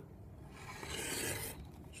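A rotary cutter run once along a steel rule through a strip of Theraband Gold latex on a cutting mat: a quiet dry scrape lasting about a second. The owner says the cutter's blade is blunt.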